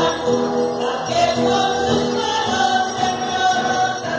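Voices singing a hymn in long held notes, with small bells jingling over the singing.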